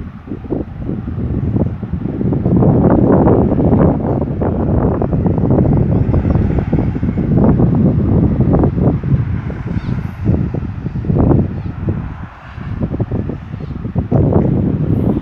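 Wind buffeting the microphone in uneven gusts, loud and rushing, stronger from about two seconds in and easing briefly near the end.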